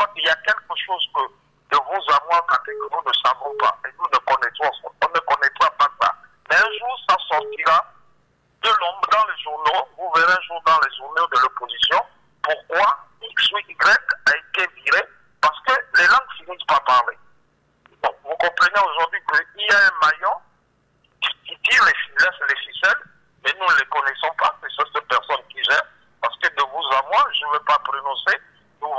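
A caller's voice speaking over a telephone line, thin and narrow-sounding, in steady phrases broken by short pauses. A faint low hum on the line shows in the gaps.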